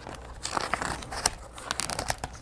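A page of a hardcover picture book being turned by hand: paper rustling and crinkling, with several short sharp crackles as the page flips over.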